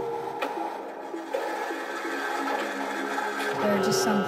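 Breakdown in a progressive psytrance track: the kick drum drops out, leaving a noisy electronic texture and held synth tones with no bass. A bassline comes back in about three and a half seconds in, and the level slowly rises.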